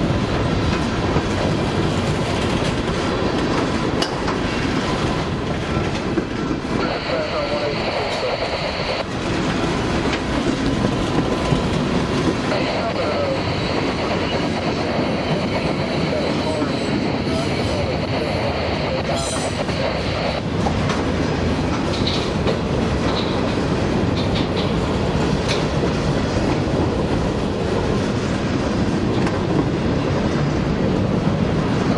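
Freight cars rolling past on curved track: a steady rumble of steel wheels on rail with occasional clicks. A high wheel squeal comes in briefly about seven seconds in, then again for about eight seconds through the middle.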